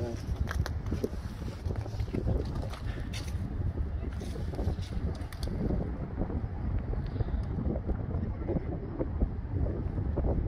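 Wind buffeting the camera microphone, a steady low rumble, with a few light clicks in the first few seconds.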